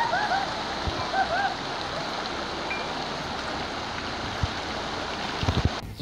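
Steady rush of water pouring out of a water slide's exit into the splash pool, with a tube rider splashing down at the start and a few brief voices in the first second or so.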